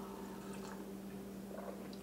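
A person sipping a drink from a mug: faint sipping and swallowing over a steady low hum.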